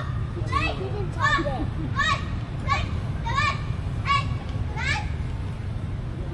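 Children playing and calling out in river water, with a short high call that rises and falls, repeated about every three quarters of a second, over a steady low rumble.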